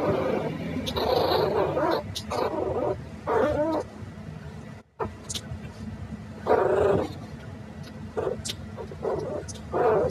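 Two chihuahua–rat terrier mix puppies play-fighting, with short bursts of growling and yipping that come and go irregularly.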